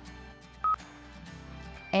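A single short, high beep from a Hyundai infotainment touchscreen about two-thirds of a second in, the confirmation tone of a tap on the screen, over soft background music.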